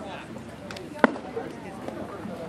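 A pitched baseball popping once into a catcher's leather mitt, a single sharp crack about a second in, over background voices.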